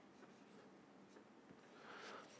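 Faint sound of a marker writing on a whiteboard.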